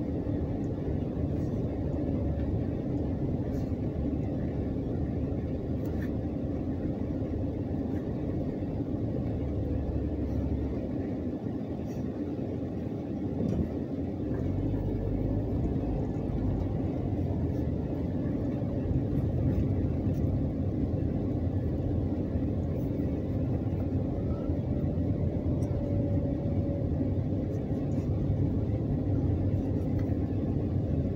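Steady low engine and road rumble heard from inside a car's cabin as it drives slowly; it dips briefly near the middle, then picks up a little louder.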